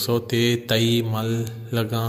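A man's voice narrating in Balochi in a steady, chant-like delivery over a constant low hum.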